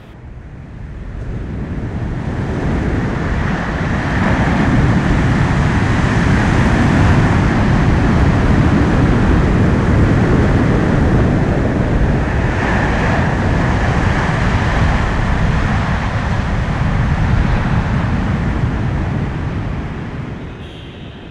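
Steady rushing sound of wind and sea surf, swelling in over the first few seconds and fading near the end.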